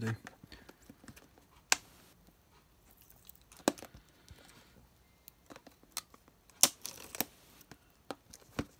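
Handling noise from a clear plastic tub being tipped and shaken out: a scattering of sharp plastic clicks and taps, with light rustling of the dry moss packing as it slides out. The loudest click comes about two-thirds of the way through.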